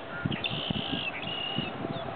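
A bird calling: high, slightly wavering notes in two phrases, the first about half a second in and the second just after a second, over a low, uneven rumble.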